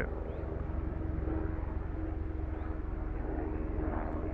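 A distant engine droning steadily over a low rumble, its faint hum rising out of the background through the middle and fading near the end.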